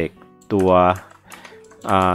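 Soft background music, a short burst of a man's speech in Thai, and computer keyboard clicking.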